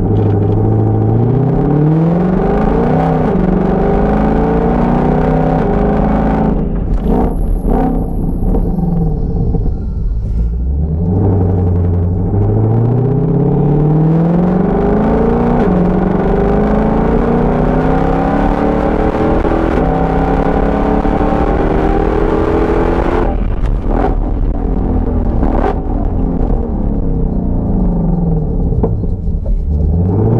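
A 2020–22 Shelby GT500's supercharged 5.2-litre V8, heard from inside the cabin, accelerating hard with its pitch climbing through the gears. There are two strong pulls, each followed by a drop in revs as the car slows: the accelerate-then-brake cycles of bedding in new brake pads.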